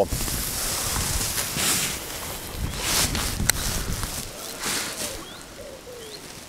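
Wind buffeting the microphone with a low rumble and a few brief gusts, and a single sharp click about three and a half seconds in. Birds chirp and call as the wind drops near the end.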